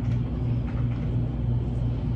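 A steady low mechanical hum with a slight pulse a few times a second, continuing unchanged under the surrounding talk.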